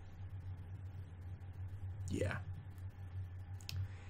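Steady low electrical hum on a microphone line, with a brief murmured voice sound about two seconds in and a single click near the end.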